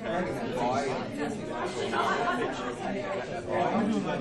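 Many voices talking over one another: people conversing in small groups around tables, a steady hubbub of chatter.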